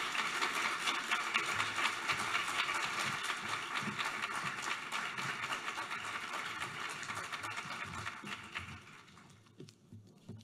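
Audience applauding, a steady clatter of many hands clapping that tapers off and dies away over the last couple of seconds.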